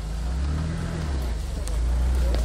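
Off-road 4x4's engine running steadily at low revs, a low even hum.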